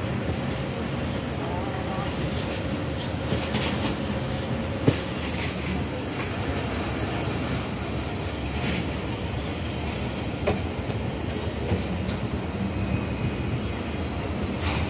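Passenger train running along the track, heard from an open coach doorway: a steady rumble of wheels on rails with scattered sharp clicks and knocks, the loudest about five seconds in.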